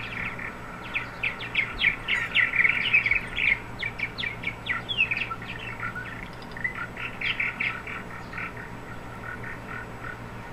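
Purple martins chattering in a rapid run of short chirps, played back from a video through computer speakers. The calling is densest and loudest in the first half and thins out near the end.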